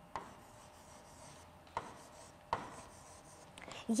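Stylus writing on the glass screen of an interactive whiteboard: faint scratching strokes with three sharp taps, the first just after the start and two more in the second half.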